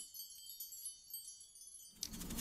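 Tinkling wind-chime sound effect: many high, bell-like tones ringing together and fading, stopping just before the end.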